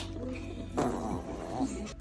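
A small dog makes a growly vocal sound about a second in, falling in pitch, while it jumps up excitedly.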